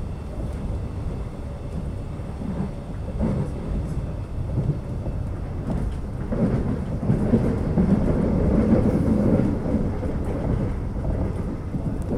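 Steady low rumble of an Alstom X'Trapolis electric train running between stations, heard from on board: wheels on rail and running gear. It grows louder from about six seconds in and eases again near the end.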